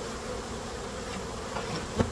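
A mass of honeybees from a caught swarm buzzing in a steady hum around an open hive while their frame is held out of the box.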